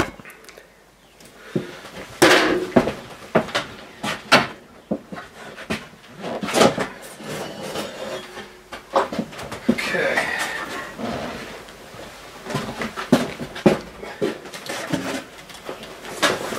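A wooden cabinet section being worked loose and lifted out: irregular knocks, bumps and scrapes of wood, with a longer scraping or creaking stretch near the middle.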